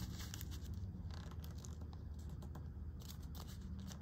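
Origami paper being folded and creased by hand on a tabletop: a run of small crinkles and crackles as the fingers press the folds flat.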